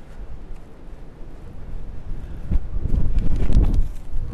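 Breeze gusting across the microphone: a low rumbling that swells louder in the second half.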